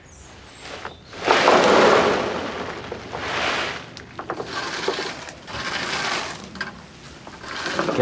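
A deep layer of drying chestnuts shifting and clattering as someone moves through it, in several rustling surges with a few sharp clicks. The loudest surge comes about a second in.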